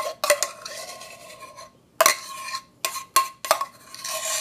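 A metal spoon scraping and clinking against the inside of a stainless steel milk-frothing pitcher as thick frothed milk is scooped out, about six sharp clinks with a short metallic ring and softer scraping between them.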